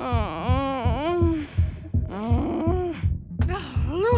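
A woman groaning twice in her sleep, long wavering groans, over the muffled thumping bass beat of party music, about three beats a second. The thumping is what is keeping her awake.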